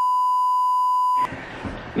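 Censor bleep: a steady, single-pitched beep dubbed over a spoken remark to blank out an inappropriate joke. It cuts off about a second and a quarter in.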